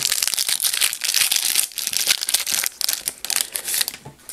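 Foil trading-card pack wrapper crinkling as it is torn open and handled: a dense run of crackles that stops just before the end.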